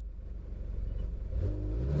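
A motor vehicle's engine running and speeding up, the low rumble growing steadily louder.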